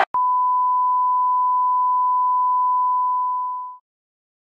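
An edited-in censor bleep: one long steady beep tone that starts with a click and fades out shortly before the end.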